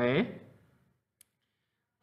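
A single computer mouse click about a second in, in a pause between spoken words.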